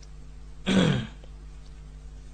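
A man clearing his throat once, briefly, about two-thirds of a second in, over a faint steady electrical hum from the microphone system.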